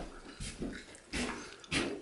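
Footsteps on the apartment floor with camera handling noise, a series of separate dull steps about one every half second to second.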